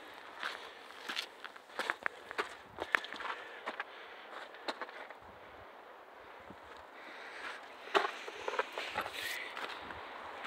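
Footsteps crunching on a gravelly dirt trail, in an irregular walking rhythm that thins out and goes quieter in the middle and picks up again near the end.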